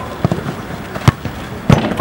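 Sharp thuds of a football being struck and saved: light taps early on, then two louder hits, one about a second in and one near the end.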